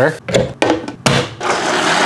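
Choppy, broken noise of running tap water filling a blender jar, then about one and a half seconds in a countertop blender starts and runs steadily, churning soapy water to clean the jar.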